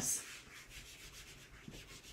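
Handheld eraser rubbing across a whiteboard, wiping off marker writing in soft, quick repeated strokes.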